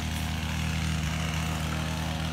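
An engine or motor running steadily: a low, even drone that does not change.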